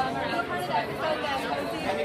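Voices talking over a background of crowd chatter from many people.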